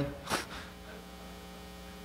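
Steady electrical mains hum in the microphone feed, with a short breathy sound about a third of a second in.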